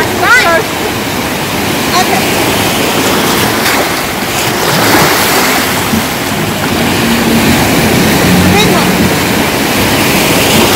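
Sea surf surging and washing over shoreline rocks, a loud continuous rush of water, with a few brief high-pitched voice cries over it.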